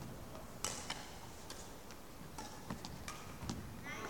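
Several short, sharp taps and clicks at irregular intervals, about seven in all, over a steady faint background hum.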